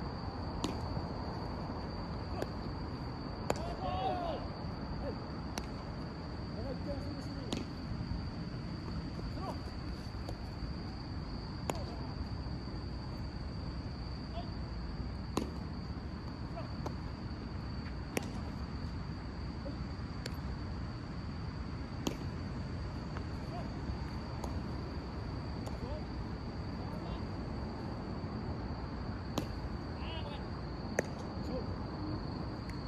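Sharp cracks of baseball infield practice, a bat hitting grounders and balls smacking into gloves, a dozen or so spread irregularly at a distance. Faint distant shouts of players come in around a few seconds in, over a steady high-pitched drone.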